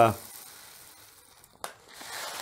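Hemp seeds poured from a foil bag into a coffee grinder's bowl, a soft hiss of falling seed that fades out within about a second, followed by a single sharp click of handling.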